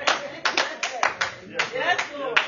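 Congregation clapping in scattered, uneven claps, a few per second, with voices calling out between them.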